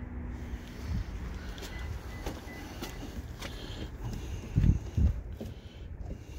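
Low outdoor rumble with faint footsteps and a couple of loud, low thumps of phone handling about two-thirds of the way through.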